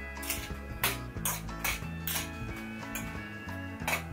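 Background music with a steady bass line, over a metal spoon scraping and clinking against a glass bowl as it stirs a wet sand-and-glue mixture, with short sharp clicks about twice a second.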